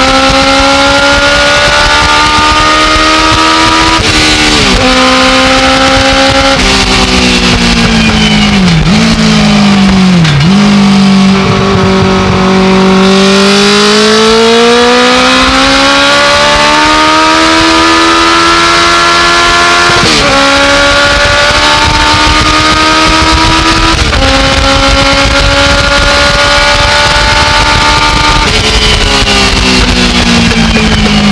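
Legends race car's motorcycle engine at full throttle, heard from inside the cockpit. Its pitch climbs through each gear and drops sharply at the shifts, about 4, 6 and a half, 20 and 24 seconds in. Around the middle it dips twice, with the revs blipped down for a corner, then rises slowly and at length as the car pulls out again.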